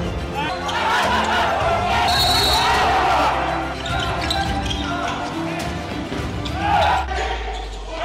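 Indoor handball match: players shouting on court and the ball bouncing on the gym floor, under background music.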